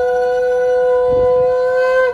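Conch shell (shankha) blown in one long, steady, loud note that stops near the end.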